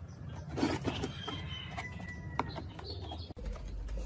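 Dirt-caked plastic radio cassette player handled and shifted on a wooden workbench, with a few light knocks. Faint high whistled tones sound in the background.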